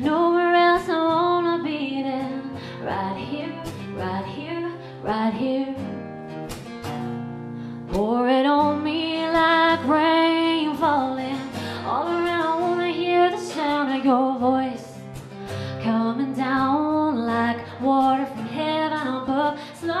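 A woman singing a slow song with two acoustic guitars strumming behind her, holding long notes, one rising into a sustained note about eight seconds in.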